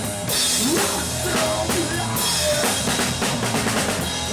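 Heavy rock band playing live, heard from right behind the drum kit: kick and snare pounding under crashing cymbals, with electric guitar over them. Cymbal crashes wash in about a quarter second in and again around two seconds.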